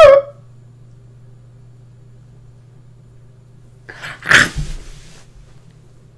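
A man laughing: a pitched laugh trails off just at the start, then one short breathy burst of laughter comes about four seconds in. A faint, steady low hum runs underneath.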